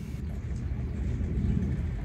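A low, steady rumble with no speech.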